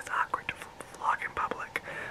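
A young man whispering to the camera, speech with no voice behind it.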